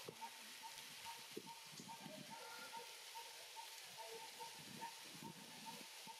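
Faint outdoor ambience in which a bird repeats one short mid-pitched note over and over, evenly, about two or three times a second, with soft low rustles now and then.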